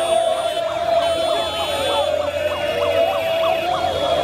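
A siren-like warbling sound, rising and falling about three times a second, over a steady droning tone, with the voices of a street crowd mixed in.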